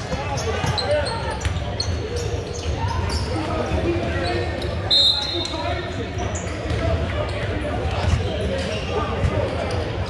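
Basketball bouncing on a hardwood gym court amid voices in a large, echoing hall, with a short, high referee's whistle blast about halfway through.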